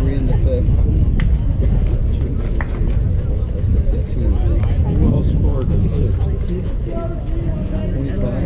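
Several people's voices, talking and calling indistinctly, over a steady low rumble.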